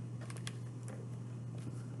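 Hardcover picture book being opened: a few faint clicks and rustles of the cover and pages being handled, over a steady low hum.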